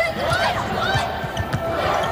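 Basketball dribbled repeatedly on a hardwood court, with players' sneakers squeaking on the floor.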